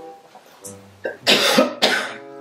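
A woman coughs twice into her hand, two loud bursts in the second half, over soft background music.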